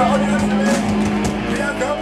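Live rock band playing loudly: a held low bass note under electric guitar and cymbal crashes, with a male singer's voice over it.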